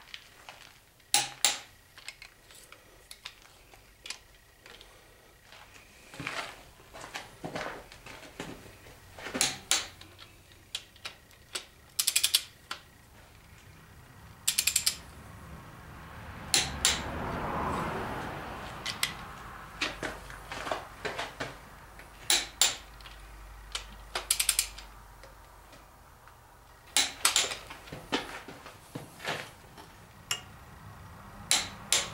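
Socket ratchet ratcheting and a click-type torque wrench clicking as the connecting-rod bolts of a Chevy 350 small-block are run down and torqued to 45 foot-pounds, in short bursts of metallic clicks spread through. A louder rushing noise swells and fades around the middle.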